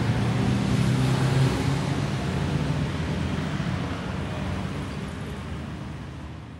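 A steady, low engine-like drone with a hiss over it, fading out slowly over the last few seconds.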